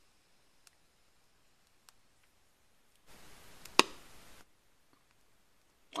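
A small hydrogen pop: a lit match ignites the hydrogen gas collected by electrolysis in a wire-nut cap, giving one short, sharp pop nearly four seconds in, inside about a second of soft noise. The pop is the sign that the collected gas is hydrogen.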